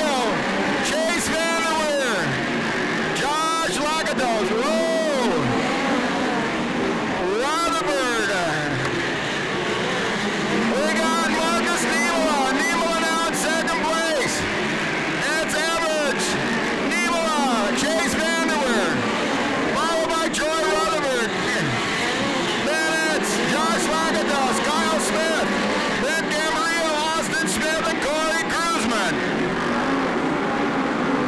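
Several midget race car engines revving as the cars circle a dirt oval, their pitch rising and falling again and again as they pass and go through the turns.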